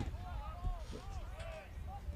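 Faint voices in the background, over a low steady rumble.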